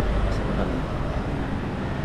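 Steady low rumble of city street traffic with a noisy hiss over it.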